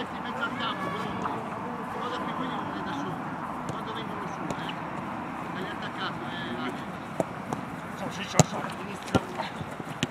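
Players shouting and calling to each other across a football pitch, a steady blur of distant voices. Near the end come a few sharp knocks of the ball being kicked, the loudest about eight and a half seconds in.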